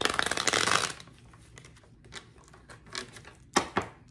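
A deck of tarot cards being shuffled to draw a clarifier card. A rapid riffle of cards runs for about a second, then there is softer handling with two sharp card clicks near the end.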